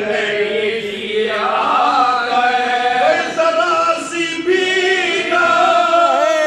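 Unaccompanied male voices chanting a marsiya (Urdu elegy) together: a lead reciter with a chorus of backing singers, drawing out long, wavering notes.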